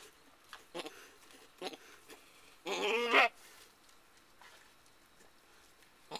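Goat bleating just after kidding: two short, faint calls in the first two seconds, then one louder bleat of about half a second near the middle.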